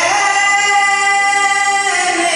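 A young man singing into a handheld microphone, holding one long high note that slides up into pitch at the start and breaks off near the end.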